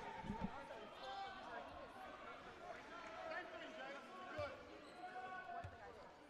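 A basketball bounced a few times on a hardwood court as a shooter goes through his free-throw routine, with faint indistinct voices in the arena.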